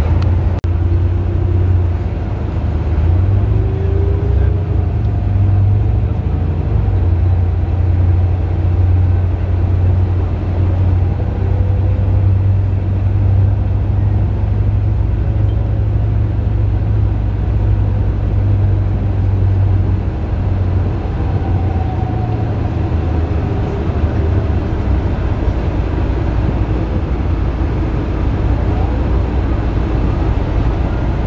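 Bus engine and road noise heard from inside the passenger cabin: a steady low drone that eases a little about twenty seconds in.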